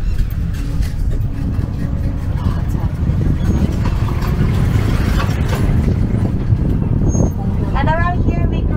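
Open-sided tour tram driving along, a steady low rumble of the vehicle and its tyres heard from a passenger seat.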